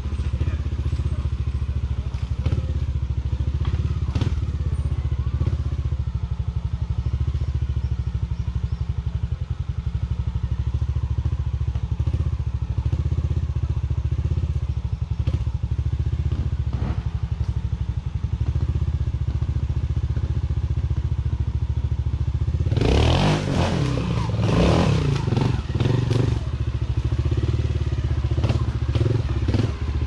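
Trials motorcycle engine running steadily at low revs, with a few short knocks. About 23 seconds in it revs up hard in several rising and falling bursts for a few seconds, then drops back.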